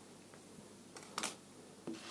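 Faint handling of small galvanized-wire side arms on a table, with one short rustling hiss a little over a second in and a faint click near the end.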